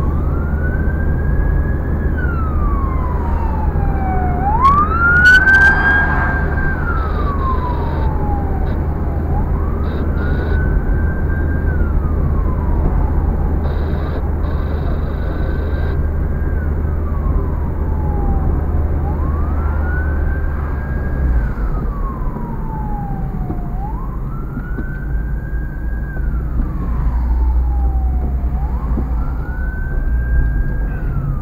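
Siren wailing in slow cycles, each rising, holding high and then falling, about every four to five seconds, loudest a few seconds in. It is heard from inside a moving car over the car's low engine and road rumble.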